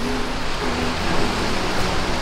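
Sea waves washing over a rocky shore, a steady rushing noise, with faint background music underneath.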